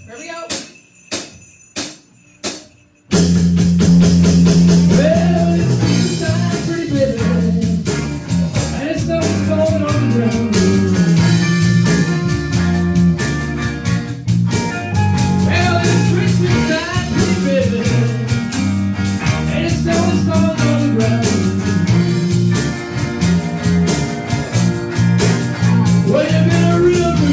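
Four sharp clicks, evenly spaced about two-thirds of a second apart, count in a live rock-and-roll band, which comes in loud about three seconds in with electric guitars, bass and drums, and a voice singing into a microphone.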